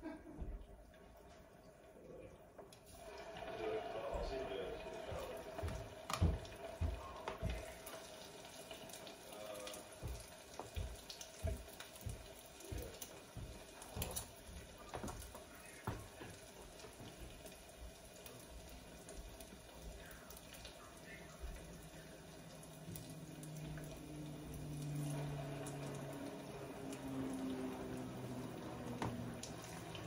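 Metal spoon and fork clicking and scraping against a bowl of fish paste, with irregular light knocks as portions are scooped and dropped into a pot of simmering water, a faint watery sound running underneath.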